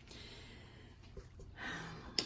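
Faint handling of a cardboard shipping box, its flaps being folded back, with a few light ticks and scrapes. Near the end there is a soft breath, like a small gasp.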